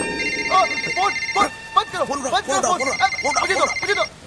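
A phone ringing: a high electronic trill in two bursts of about a second and a quarter each, with a pause between, over hushed, overlapping voices.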